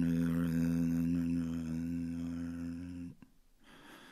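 A low sustained droning tone, steady in pitch, that slowly fades and stops about three seconds in.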